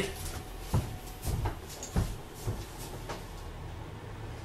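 Footsteps and a few scattered light knocks, one every half second or so, over a low steady hum.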